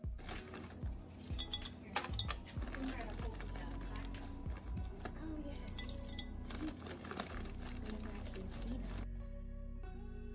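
Small candies pouring and clattering into glass cylinders, with sharp clinks against the glass, over background music. The clatter stops suddenly about nine seconds in, leaving only the music.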